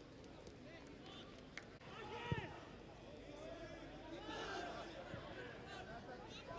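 Faint voices calling out across an open football pitch over a low stadium background, with one louder call about two seconds in.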